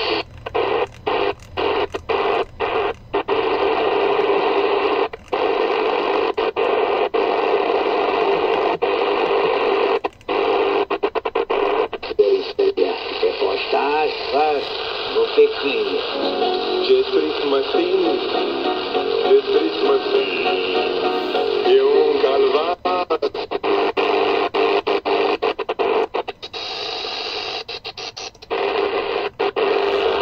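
Medium-wave AM broadcast stations playing from the speaker of a TEF6686 DSP receiver as it is tuned across the band: speech and music under noise and hum, broken by many brief dropouts while the dial is turned.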